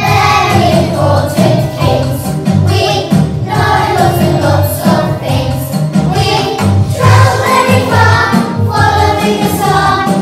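A group of young children singing a song together to a backing track with a steady beat.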